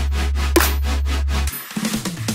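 Future bass track playing back from the producer's project: a held sub bass under a fast, even pattern of short rhythmic hits. About one and a half seconds in, the sub bass drops out and a noisy, choppy transition starts.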